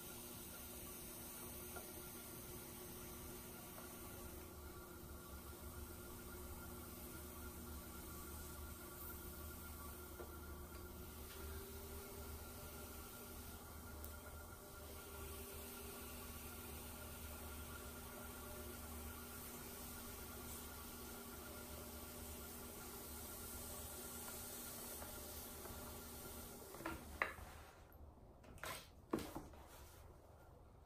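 Electric pottery wheel running steadily with a faint motor hum while a trimming tool shaves clay from an upside-down bowl. The hum stops suddenly near the end, followed by a few light clicks of the tool being handled.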